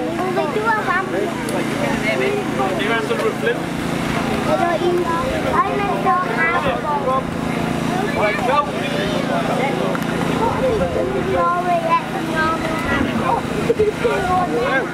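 Engine of a hydraulic rescue-tool power pack running steadily as a car roof is cut, with people's voices over it.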